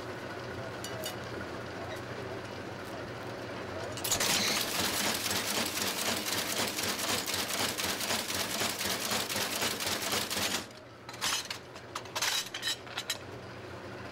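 Broom-sewing machine stitching a corn broom: a loud, rapid mechanical clatter as its needles swing back and forth pulling the string through, starting about four seconds in and cutting off abruptly some six seconds later, then a few short clatters. A low steady motor hum runs underneath.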